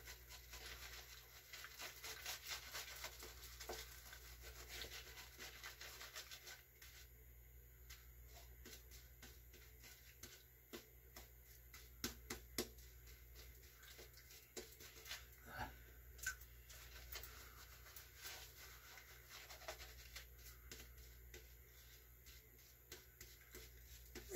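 Faint, rapid scratchy strokes of a badger-hair shaving brush working lather into a wet face and beard, busiest in the first few seconds and sparser later.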